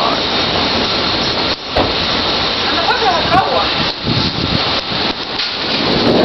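Torrential rain and strong wind of a squall line: a loud, steady hiss of pouring rain with no let-up.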